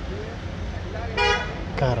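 A vehicle horn gives one short steady toot a little past a second in, over a low rumble of road traffic.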